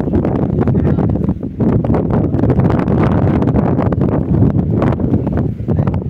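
Wind buffeting the microphone: a loud, uneven low rumble with irregular crackles.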